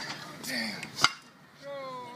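A single sharp click about a second in, the loudest sound here, between a person's brief word and a voice calling out with a rise and fall in pitch near the end.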